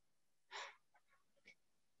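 Near silence, with one faint, short intake of breath about half a second in and a faint tick near the end.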